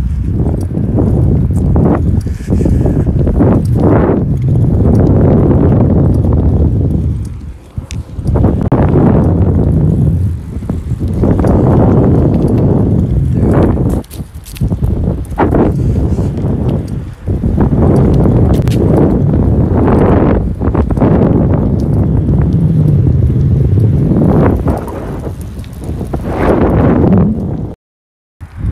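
Wind buffeting the phone's microphone on a fast bicycle ride, loud and gusty, swelling and dropping every few seconds, with occasional knocks from the bike over the ground.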